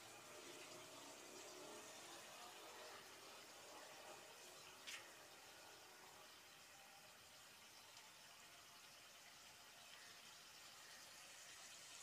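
Very faint, steady hiss of minced-meat keema simmering in a pot on a gas burner, with one short tick about five seconds in.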